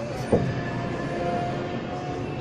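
Dotto tourist road train running along a city street, heard from inside its open carriage: steady rolling and drive noise, with a single sudden loud knock about a third of a second in.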